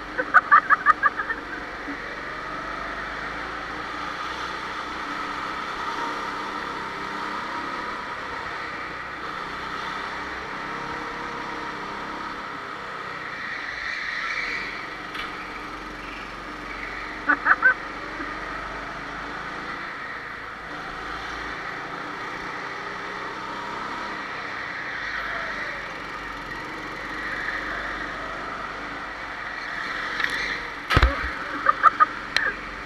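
Go-kart engines running steadily on track. Two short bursts of rapid pulses cut through, one just after the start and one a little past halfway.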